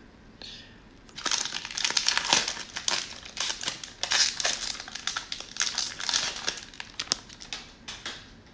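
Cellophane wrapper of a 2021 Donruss football cello pack crinkling as it is torn open and worked off the cards by hand: a dense, irregular crackle starting about a second in.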